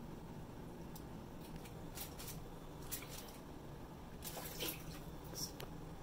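Faint wet squishing and scraping of a silicone spatula spreading tomato sauce over a pizza crust, with a few soft scattered clicks and taps.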